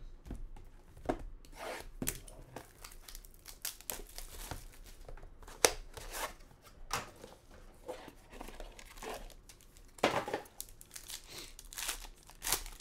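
A Topps Supreme baseball card box being opened by hand and the foil pack inside torn and crinkled: irregular tearing and rustling, with a sharp snap about halfway through and louder tearing near the end.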